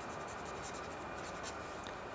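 Ballpoint-style pen scratching faintly on lined notebook paper as a word is handwritten.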